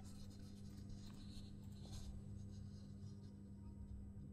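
Quiet room tone with a steady low hum, and faint soft rustling of magazine paper being handled.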